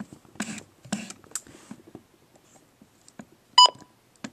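A Midland WR-100 weather radio's key beep: a single short, high electronic beep near the end as one of its buttons is pressed, after a few faint rustles.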